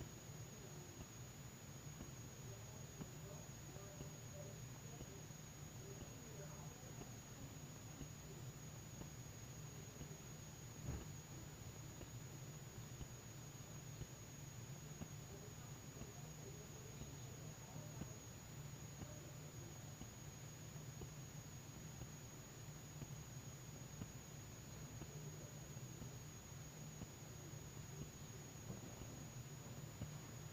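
Quiet room tone: a low steady hum with a thin high whine above it, and a single soft knock about eleven seconds in.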